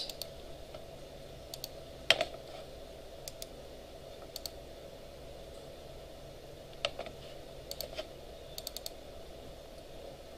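Scattered clicks from a computer mouse and keyboard, single or a few in quick succession, over a faint steady room hum.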